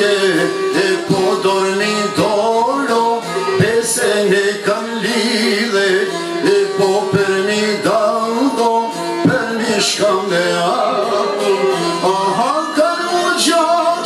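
Live Albanian folk song: a man singing over plucked çifteli and other long-necked lutes, the strings picking a busy steady accompaniment under the wavering vocal line.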